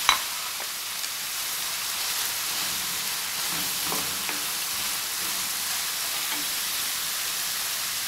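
Minced beef frying in oil in a non-stick pan, with a steady sizzle, stirred now and then with a plastic spoon. A sharp click comes at the very start.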